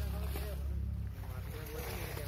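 Wind rumbling on the microphone, heaviest for the first second and then easing, with faint voices talking in the background.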